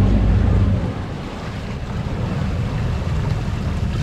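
Twin Suzuki outboard motors running with a low rumble, loudest for about the first second and then easing off, with the boat stuck on a sandbar. Water churns at the stern and wind buffets the microphone.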